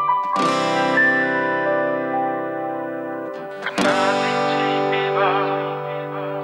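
Acoustic guitar playing the intro's G and C chords. Each chord is strummed once and left to ring, the strums about three and a half seconds apart, and a wavering higher melody line sounds over the second chord.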